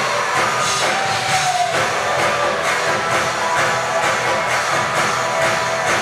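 Live band playing an R&B-pop dance number with a steady drum beat about two beats a second, guitar and keyboard tones over it.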